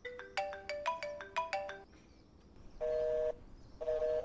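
A mobile phone call: a quick run of chiming ringtone notes, then, about three seconds in, steady beeps of about half a second each, roughly one a second, heard on the line.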